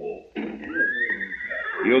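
A horse whinnying for about a second and a half, a sound effect on an old radio-drama recording.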